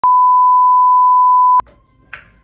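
Television colour-bar test tone: one steady, loud, pure beep held at a single pitch, cutting off suddenly with a click about a second and a half in, leaving faint room tone.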